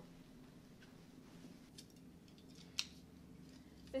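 Quiet room hum with a few light clicks and one sharper click near three seconds in: the prop foils being handled on a serving tray.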